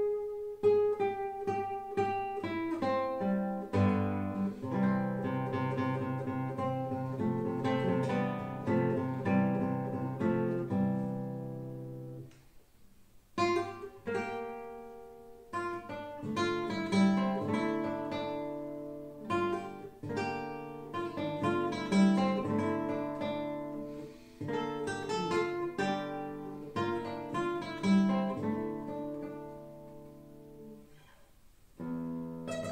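A 1945–50 Ricardo Sanchis Nácher classical guitar with a spruce top, played solo with the fingers: a flowing run of plucked notes over ringing bass notes. The playing stops briefly about twelve seconds in, then resumes.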